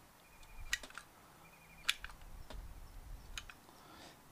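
A handful of sharp, irregular clicks from a caulk gun being squeezed to dispense construction adhesive, the loudest about two seconds in.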